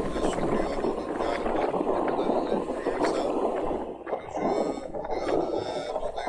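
Steady rushing wind and running noise on the open deck of a moving Seatran passenger ferry, with wind buffeting the microphone.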